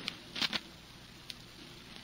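A quiet gap in an old radio broadcast recording: faint steady hiss, with two short soft noises about half a second in and a faint click a little later.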